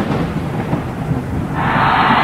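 Thunder sound effect: a low rolling rumble dying away, then a steady hiss like heavy rain starting about one and a half seconds in.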